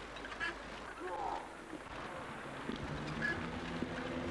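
Young people's voices calling out in short bursts. From about two-thirds of the way in, a steady low droning tone with several pitches joins them.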